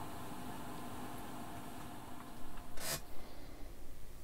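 Quiet room tone: a steady faint hiss with a low hum. About three seconds in, one short soft rush of noise comes, and the background then changes character.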